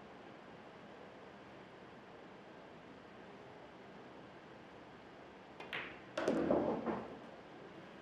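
Faint hall tone, then near the end a pool cue striking the cue ball and sharp ball-on-ball clicks as the cue ball hits the 9-ball. A louder clatter follows about half a second later as the 9-ball drops into the pocket and finishes the rack.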